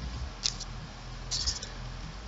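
A few short, light clicks from computer input during a screen recording: one about half a second in and a quick cluster past the middle. They sit over a steady low hum.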